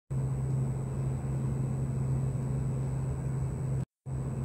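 Steady running noise of an electric passenger train heard from inside the carriage: a continuous low drone and rumble with a faint high, steady whine above it. It cuts off abruptly just before the end.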